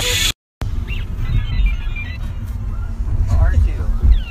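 A short burst of music cuts off abruptly. Then a car cabin's low road rumble runs on, with faint voices in the background.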